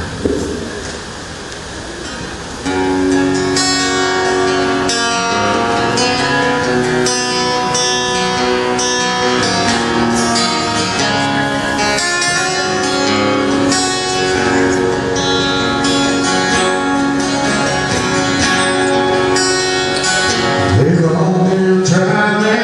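Solo acoustic guitar playing the slow intro to a song, coming in about two to three seconds in after a brief lull; a man's singing voice enters near the end.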